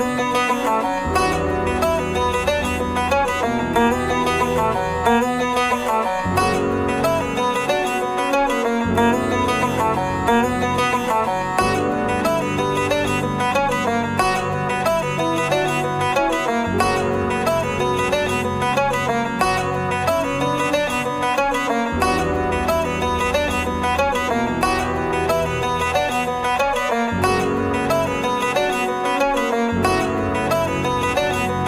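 Background music: an upbeat piece on banjo and guitar in a bluegrass style, with a steady picking rhythm.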